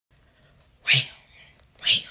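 A woman's voice giving short, sharp, breathy exclamations in a steady rhythm, two of them about a second apart.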